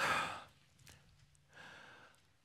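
A man's sigh, a breathy exhale close to the microphone lasting about half a second, with a faint breath again near the end.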